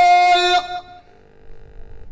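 A man's voice through a PA system, holding one long steady sung note of tanḍḍamt poetry that breaks off about half a second in. Faint low murmur from the room follows.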